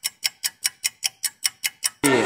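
Ticking-clock sound effect, a quick even tick about five times a second, used as a quiz countdown while a multiple-choice question waits for its answer. It stops abruptly at the end.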